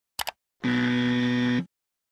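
Two quick click sound effects, then a steady buzzer tone lasting about a second: a 'wrong' buzzer sound effect.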